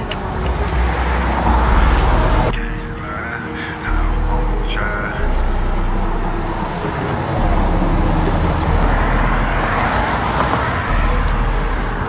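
Road traffic going by, a steady rumble of cars that swells as vehicles pass, once about a second in and again later. The background changes abruptly about two and a half seconds in.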